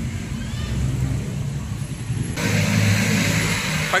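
Motor vehicle engine running on the street close by, the rumble growing louder about two and a half seconds in as it draws near.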